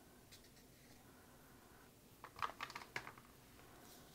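Paper cutouts and ticket stubs being handled on a cutting mat: near quiet, then a short run of crisp clicks and rustles a little over two seconds in.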